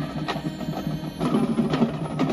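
High school marching band playing, with sharp percussion strikes about a third of a second in and again near the end, and low held band notes coming in about halfway through.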